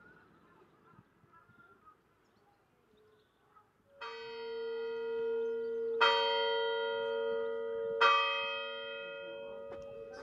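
A single church bell struck three times, about two seconds apart, starting about four seconds in. Each strike rings on and overlaps the next, fading slowly after the last.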